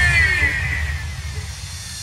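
Electronic remix intro effect: a falling, sweeping tone over a deep rumble, fading gradually.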